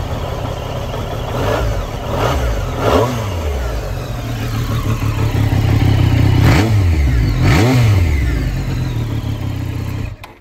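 2020 Triumph Street Triple 765 RS inline three-cylinder engine, fitted with an Arrow aftermarket silencer, idling in neutral and blipped on the throttle: three short blips early on, then two bigger revs past the middle, the loudest part.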